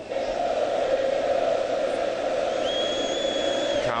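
Stadium crowd chanting and singing in unison, rising suddenly at the start and holding steady. Past the halfway point a single long, steady high-pitched whistle sounds over the crowd for over a second.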